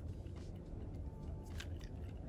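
Low steady hum with a few faint, soft clicks from fingers handling elastic beading cord as a knot is pulled tight.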